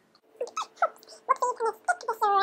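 A child's voice making short, wordless squeaks and hums in quick succession.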